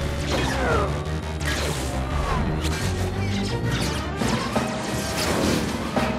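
Loud action film score with sound effects laid over it: several falling whistling glides and crashing, clattering effects over sustained low orchestral notes.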